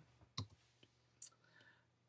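Near silence in a small room, broken by one short, sharp click about half a second in and a fainter tick a little after a second.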